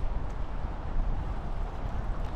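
Wind buffeting the microphone: a steady, uneven low rumble under a rushing hiss, with no distinct clicks or tones.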